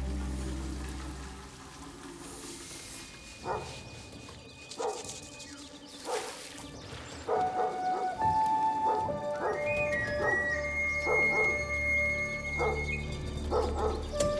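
A dog barking: single barks about a second and a half apart, then from about halfway through a quicker run of barks, over soft sustained music.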